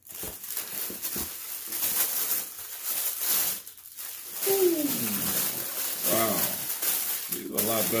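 Crinkling and rustling of a thin plastic shoe bag as sneakers are pulled out of it and handled, with a brief falling vocal sound from the man about four and a half seconds in.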